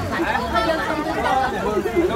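Several people's voices chattering at once, with a low steady rumble underneath.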